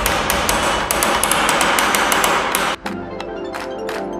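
A hammer drives a steel wedge into the top of a wooden tool handle, seating it in the head's eye. The strikes come in a quick run and stop about three quarters of the way in, over background music.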